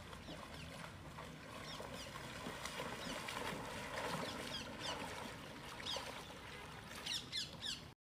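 Deer splashing through shallow pond water, with birds chirping throughout; a quick run of louder descending chirps comes near the end.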